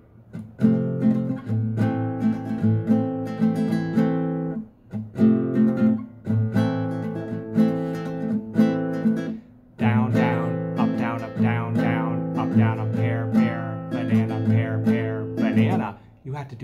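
Nylon-string classical guitar strummed in a down, down, up, down, up pattern, moving between an F chord with C in the bass and A minor, in phrases broken by short pauses.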